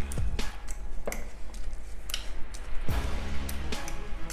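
Background music, with a metal fork clicking and scraping against a ceramic bowl as it mashes cooked carrot slices: several irregular clicks.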